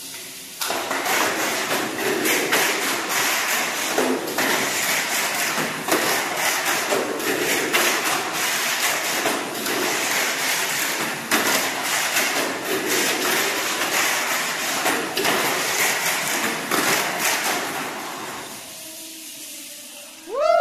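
Tamiya Mini 4WD car on an SFM chassis running laps of a plastic track: the steady whirr of its small electric motor and gears, with frequent clatters as it knocks along the track walls. It starts about half a second in and stops a second or two before the end.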